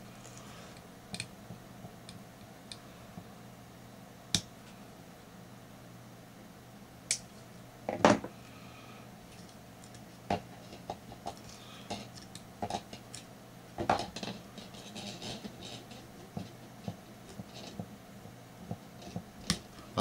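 Pliers and thin leader wire clicking and scraping in short, irregular ticks as the wire's free end is worked back and forth to snap it off rather than cut it, leaving no sharp edge. The loudest click comes about eight seconds in, and the ticks grow more frequent in the second half, over a faint steady hum.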